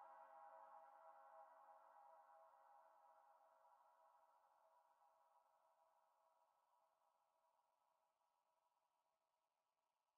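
Near silence: the last faint held tones of an ambient track die away over the first couple of seconds, then nothing.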